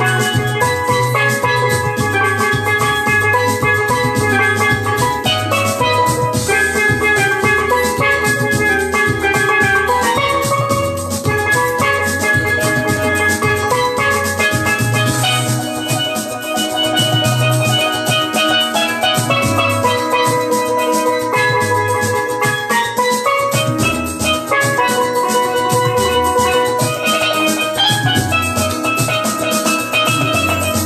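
Chrome-plated steel pan struck with sticks, playing a continuous running melody of short ringing notes over a steady bass and drum accompaniment.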